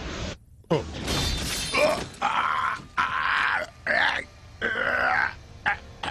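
A man groaning and gasping in pain, a string of short strained cries with brief breaths between them: the sounds of a man fatally wounded.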